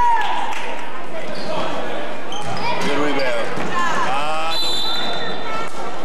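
Spectators in a school gymnasium shouting and calling out during a basketball game, with a basketball bouncing on the court floor. A referee's whistle sounds briefly about four and a half seconds in.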